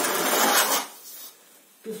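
A metal angle rule scraped across loose sand, a rasping drag that lasts about a second and is followed by a fainter short scrape. This is the sand base being screeded level between floor beacons.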